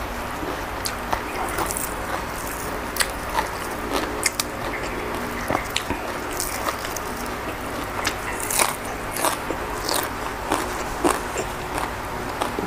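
Close-up chewing of a mouthful of crisp raw vegetables and meat salad, with irregular sharp crunches several times a second.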